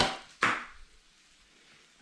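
Two short knocks about half a second apart as an omelette is tossed in a frying pan and flops over the rim: a sharp click, then a duller slap.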